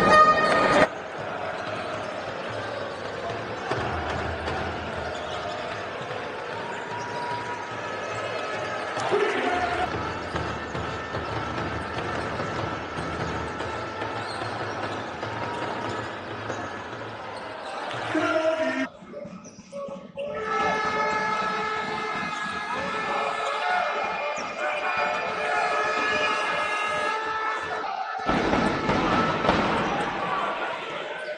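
Live basketball game sound: arena crowd noise with a ball bouncing on the court. A few words from a man's voice come about two-thirds through, followed by several seconds of steady pitched tones over the crowd.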